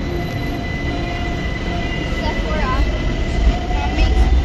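A BTS Skytrain running on the elevated track, with a steady high whine and a low rumble that builds toward the end.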